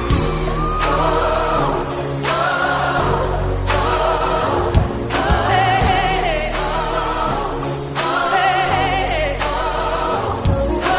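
Music: a song with several voices singing long, wavering held notes over the backing track.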